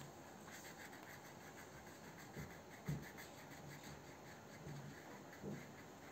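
Faint scratching of a wax crayon being rubbed back and forth on paper, in quick repeated strokes. Soft thumps cut in twice, the louder one about three seconds in.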